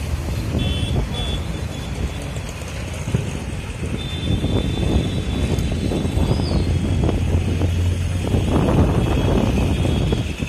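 Busy street traffic, with motorcycles and other motor vehicles passing close by. A low engine drone builds in the second half and is loudest near the end.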